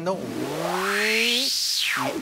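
White-noise effect from a Pioneer DJ mixer, its filter swept by the knob so the hiss rises in pitch to a peak about a second and a half in, then drops away sharply. A lower pitched tone glides slowly upward under it and stops just before the peak.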